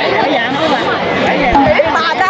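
Teenage girls talking and chattering close by, several voices overlapping.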